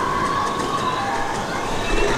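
Boat ride's ambient soundtrack: a steady dense wash of noise with a few faint high gliding tones running through it.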